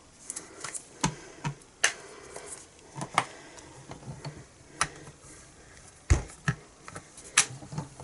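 Scattered clicks and taps as an ink pad is dabbed onto a clear photopolymer stamp and the hinged clear plate of a Stamparatus stamp-positioning tool is handled, with one heavier thump about six seconds in as the plate is pressed down onto the card to re-stamp the image.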